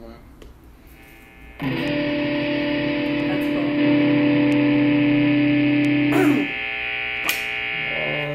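Electric guitar with distortion: a chord struck about one and a half seconds in rings out steadily for about five seconds. Near the six-second mark a downward slide drops it into a quieter held chord.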